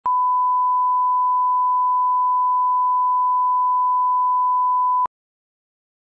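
A steady, pure 1 kHz line-up reference tone of the kind placed at the head of a broadcast television package. It holds one unchanging pitch for about five seconds, then cuts off suddenly.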